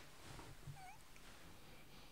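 Near silence: room tone, with one faint, short tone that bends up and down in pitch a little under a second in.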